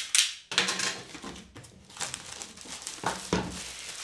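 Clear plastic shrink-wrap being pulled off a cardboard box, crinkling and rustling unevenly, loudest at the start, with a knock near the end.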